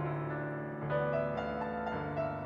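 Women's choir singing a slow, sustained passage with piano accompaniment, the chords changing every half second or so.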